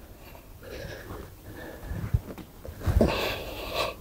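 A man breathing during resistance-band rows, with a loud breathy exhale about three seconds in, just after two brief dull low thumps.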